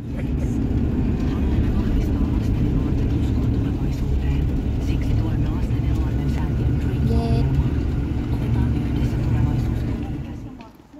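Steady engine and road rumble of a 1990s Chevrolet Suburban at cruising speed, heard from inside the cabin.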